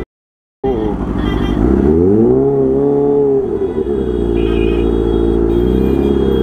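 Kawasaki Ninja H2's supercharged inline-four running at low speed in traffic after a half-second dropout at the start; the revs rise about two seconds in, hold, and drop back a second and a half later.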